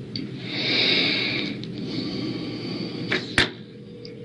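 A hissing rush lasting about two and a half seconds, followed by two clicks and a sharp knock about three seconds in: handling noise from a cell phone being picked up and raised to the ear.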